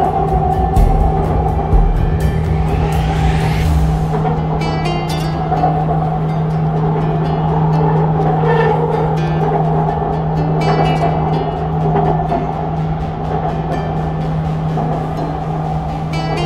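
Background music over the steady running noise of an elevated metro train. In the first few seconds a whine climbs in pitch as the train's electric traction motors accelerate.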